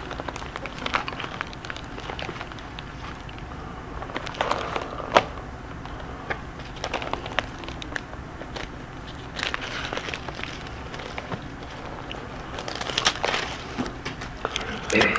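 Paper rustling and crackling with scattered light clicks as the pages of a Bible are leafed through to find a passage, with a sharper click about five seconds in.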